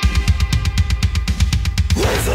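A drum kit playing on its own in a break of the song: fast, evenly spaced bass drum and cymbal hits, about nine a second.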